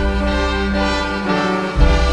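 Full orchestra playing a fanfare: held chords over heavy low bass notes, with a loud new chord struck near the end.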